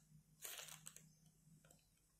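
Near silence with a faint low hum; about half a second in comes a brief, soft rustle of a crocheted cotton cap being handled, followed by a few faint clicks.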